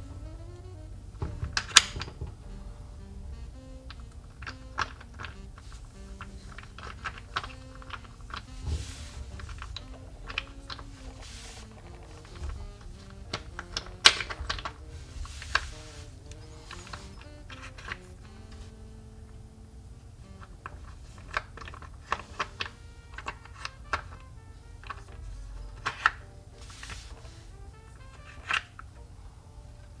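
Wooden puzzle blocks clicking and knocking irregularly as they are slid and shifted in a wooden tray, with sharper knocks about two seconds in and near the middle. Soft background music plays underneath.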